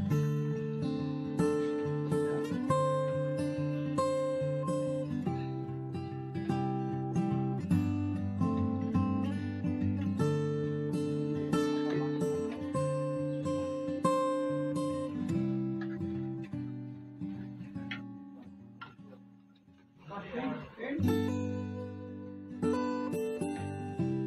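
Background music: acoustic guitar playing a run of plucked and strummed notes. It fades out about 18 seconds in and starts again about 21 seconds in.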